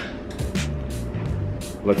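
Background music: a bass line stepping between notes under a steady beat, with a spoken word near the end.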